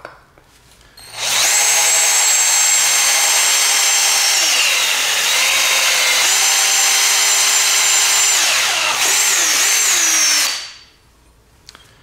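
Bauer 20V cordless drill with a titanium-coated twist bit drilling through quarter-inch aluminum plate. The motor whine starts about a second in, drops in pitch midway and comes back up, wavers near the end, and stops with a second or so to go.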